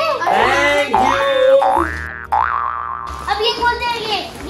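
A comic 'boing'-style sound effect: three short rising pitch sweeps in quick succession, followed by excited voices.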